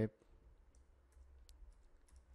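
Computer keyboard keys clicking faintly as a few characters are typed, in a handful of separate clicks.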